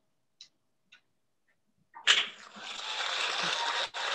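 Applause starts suddenly about halfway in, after near silence with a couple of faint clicks, and carries on steadily.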